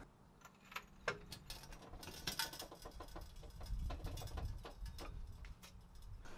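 Faint, irregular small clicks and ticks, a few to several a second, over a low steady background rumble.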